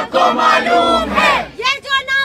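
Crowd of protesters shouting a slogan together, many voices at once, with a single voice starting the next call near the end.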